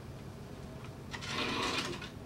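Lab cart's wheels rolling along a metal track as the cart is pushed back by hand, a short rolling rub lasting under a second near the end.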